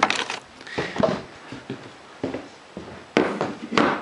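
Handling noise as a DeWalt drill battery pack is taken off its charger and carried: a handful of irregular plastic knocks and rustles, about five in all.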